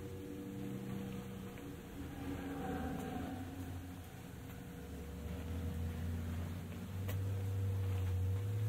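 A steady low mechanical hum, growing louder in the low end from about five seconds in.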